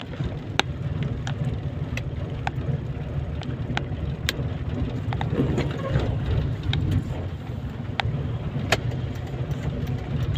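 Car driving on a wet road, heard from inside the cabin: a steady low engine and road rumble, with scattered sharp ticks of raindrops hitting the windshield and roof.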